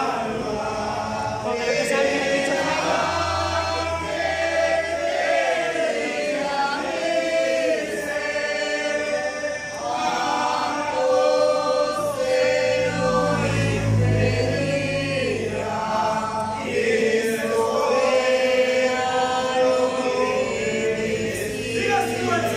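A congregation singing a hymn together in a reverberant hall, many voices on one melody, with a low bass note sounding twice under the singing.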